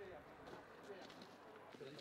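Very quiet: faint voices of a group of people talking outdoors.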